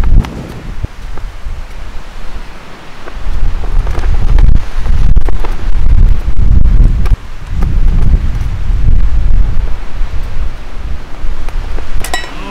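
Strong gusting wind buffeting the microphone: a loud, low rumble that swells and dies away in gusts, quieter for the first few seconds and heaviest from about four seconds in.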